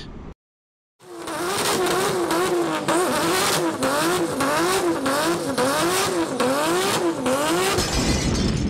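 Dead silence for about a second, then a car engine sound effect: the engine revving up and dropping back in quick repeated swells, about two a second.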